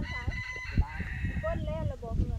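A rooster crowing once: one long call that wavers near its end.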